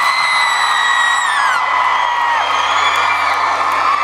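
Concert audience cheering and screaming, with long high-pitched screams that rise and fall over a loud crowd noise.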